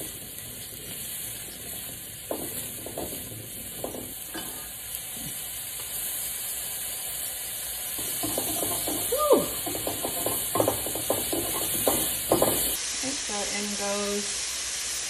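Sliced mushrooms sizzling in hot oil in a stainless steel wok, with a steady hiss. Metal tongs stir them, clicking and scraping against the pan, most busily in the second half.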